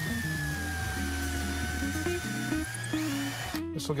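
Cordless drill boring a pilot hole in a cedar miter joint: one steady motor whine whose pitch sags slowly as the bit works, then rises briefly before it stops about three and a half seconds in. Background music plays underneath.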